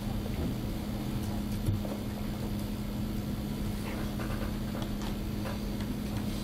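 Steady low hum of room background noise, with a few faint keyboard and mouse clicks.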